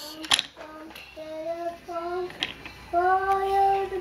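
A toddler vocalizing in sing-song tones: three short held notes, then one long held note near the end. A few sharp clicks from the toy train and wooden track come in between.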